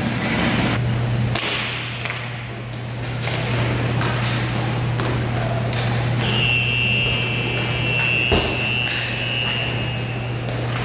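Roller hockey play: sticks clacking on the puck and floor with scattered knocks, one sharp knock about eight seconds in, over a steady low hum. A steady high tone sounds through the last four seconds.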